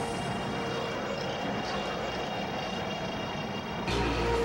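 Radio-drama sound effect of vehicles moving out, a steady rushing engine-like noise with faint music beneath, ending in a sharp hit just before the music comes back in.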